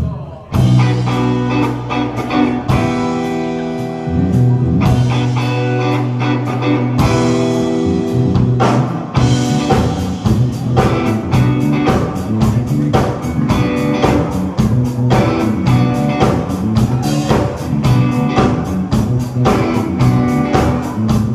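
Live rock band starting a song: electric guitar and bass come in with held chords and accents about half a second in, then the drums lock into a steady, fast dance beat about nine seconds in.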